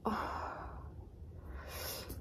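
A woman sighing: one breathy exhale that fades away over about a second, followed near the end by a short hissing breath.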